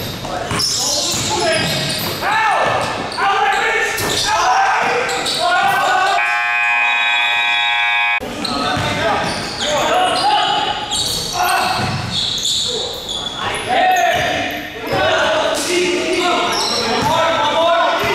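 Basketball game in a hardwood gym: the ball bouncing on the court and players' voices echoing in the hall. About six seconds in, the scoreboard buzzer sounds one steady two-second blast as the game clock runs out to end the period.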